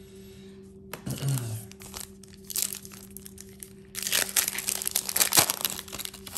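Foil trading-card pack wrapper crinkling and tearing as it is pulled open by hand. The crinkling is loudest and densest over the last two seconds. A throat clear comes about a second in.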